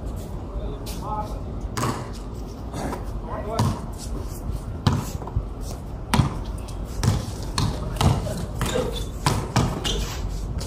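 A basketball bouncing on a concrete court, irregular thuds about once a second, with players' voices calling out between them.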